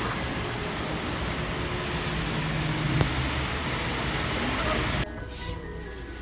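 Street traffic noise with a steady engine hum from a coach pulling up at a roadside stop, with a brief click about three seconds in. About five seconds in it cuts off suddenly to a much quieter steady background.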